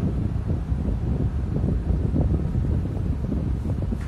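Air buffeting the microphone: a steady, fluctuating low rumble with no voice.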